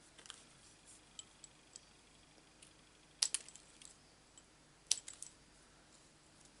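Small scissors snipping apart die-cut cardstock leaves: a few light, sharp clicks spaced irregularly, the two loudest about three and five seconds in.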